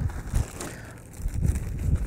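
Hands rummaging in a golf bag's pocket: the bag's fabric and a plastic bag rustling, with a few low bumps and handling knocks.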